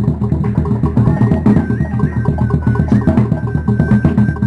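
Fast, steady drumming on large upright drums accompanying a dance. About a second in, a high, held whistle-like tone enters, steps down slightly in pitch and holds.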